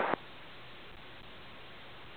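Airband radio transmission of a pilot's voice cutting off abruptly just after the start, leaving a faint steady hiss from the receiver on the open frequency.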